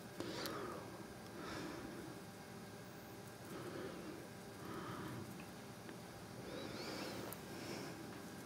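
Faint, soft swishes of a brush mixing acrylic paint on a palette, about one a second.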